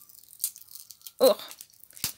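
Sticky foam tape being peeled and handled, with a few faint crackling ticks as the adhesive pulls apart.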